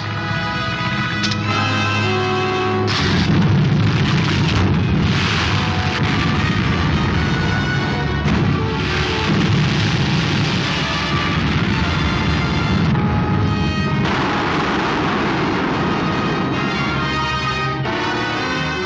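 Dramatic orchestral film score from a 1950s serial, with rumbling blast-and-eruption sound effects surging under it several times from about three seconds in.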